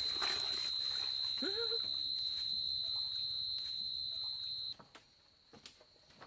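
A steady high-pitched whine with one short rising-and-falling vocal call about a second and a half in; the whine and the background cut off abruptly near the end.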